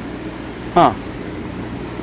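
Steady hum of a CO2 laser engraving machine's fans and pumps running, with the laser itself switched off. A man's short 'huh' comes a little under a second in.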